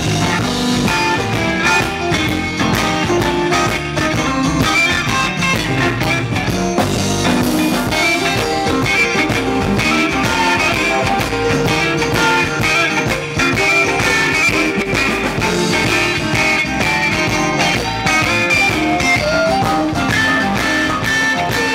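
Live electric blues band playing: electric guitar, drum kit and harmonica played into a microphone.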